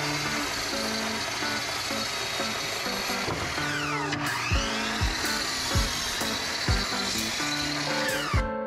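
Compound miter saw running and cutting a wooden board, a steady hard whine whose pitch drops about three and a half seconds in and climbs back as the blade takes the load. Background music plays over it, with a drum beat from about halfway.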